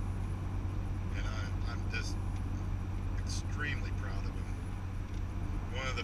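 Steady low road and engine drone inside a moving car's cabin while driving on a highway, with a few brief sounds from the driver's voice.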